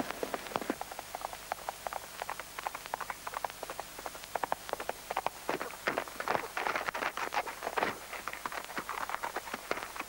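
A galloping horse's hooves on a dirt road: a quick, irregular run of hoofbeats, growing louder about halfway through.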